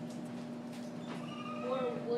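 Classroom room tone: a steady low electrical hum with indistinct voices in the second half, not loud enough to be made out.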